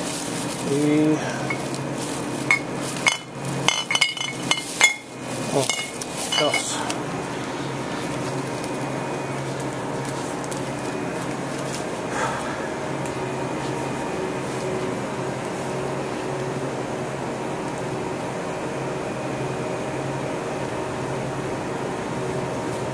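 Glass beer bottles clinking against each other and a thin plastic carrier bag crinkling as the bottles are bagged, a dense run of clinks and rustles over the first seven seconds or so. After that only a steady hum with a few fixed tones remains.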